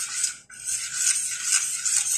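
Metal spoon stirring thick, sticky tapioca pearls in a stainless steel pot: steady scraping and rubbing against the pot, with a brief break about half a second in.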